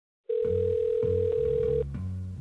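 Ringback tone of an outgoing phone call: one steady beep of about a second and a half, with the thin sound of a phone line, starting just after the beginning. Low bass notes play underneath.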